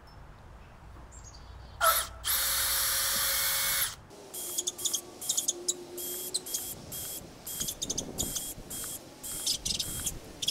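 Makita 18V cordless drill running into weathered reclaimed boards. It starts with a sharp click about two seconds in, runs steadily for about two seconds, then gives a string of short, uneven bursts.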